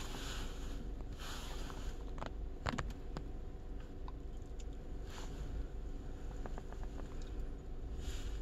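Steady low rumble of a vehicle interior, with a few light clicks and brief rustles of handling scattered through it.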